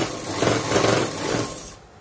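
Sewing machine running, its needle stitching rapidly through layers of fabric, stopping near the end.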